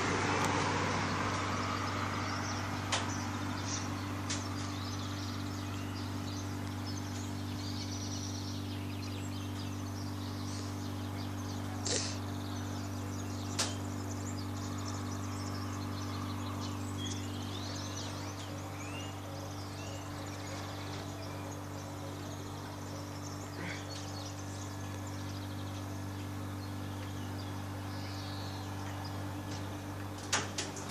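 Quiet street ambience under a steady low hum: a car drives past at the start and fades away, faint bird chirps come through, and there are two short sharp clicks a little under halfway through.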